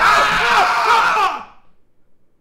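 A man screaming loudly in fright, a wavering yell whose pitch rises and falls several times before it cuts off about a second and a half in: the startled scream of someone caught off guard by a person walking in unannounced.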